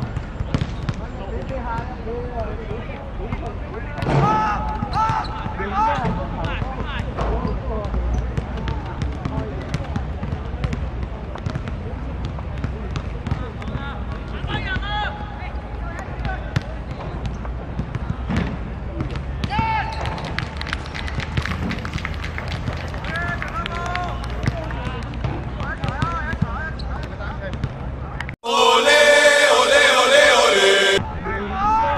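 Open-air football match sound: boys' shouts and calls on the pitch, with scattered sharp thuds of the ball being kicked over a steady outdoor rumble. Near the end the field sound cuts off and a loud musical sting starts.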